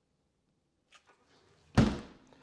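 Chest freezer lid shut with a single loud slam near the end, with a short ring after it. Before it there is near silence apart from a faint click.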